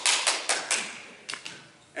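Folding hand fan snapped shut repeatedly: a quick run of sharp snaps, then two more about a second and a half in. These are the 'horrible snapping noises' the fan makes when closed for emphasis.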